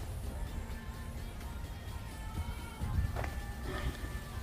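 Background music with a soft, steady melody. About three seconds in there is one brief, muffled clunk: the Cupra Formentor's central door locks engaging on their own as the key is carried away from the car (walk-away locking).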